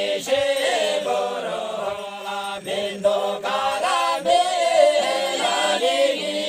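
A group of villagers singing a folk song together in unison, several voices chanting the same bending melody.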